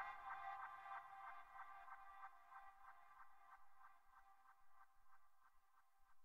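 Closing fade-out of a progressive psytrance remix: a pulsing synth pattern, about four to five pulses a second, with no bass or kick, growing steadily fainter.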